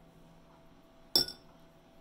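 A metal teaspoon striking the rim of a ceramic mug as it is set down in the tea, one sharp clink with a brief ring about a second in.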